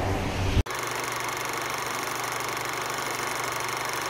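Dance music cuts off abruptly about half a second in. It is followed by a steady mechanical whirr with a fast, even flutter that holds at one level.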